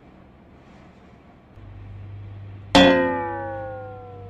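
Edited-in sound effect: a low hum comes in about a second and a half in, then near three seconds a sharp metallic ring strikes and its tones slide steadily downward in pitch as it fades.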